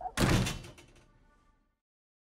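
A door shutting firmly, one sharp impact just after the start that dies away over about a second and a half.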